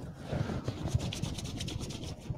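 Hands rubbing together, palms moist with a sprayed-on lotion, in a quick, even run of back-and-forth strokes.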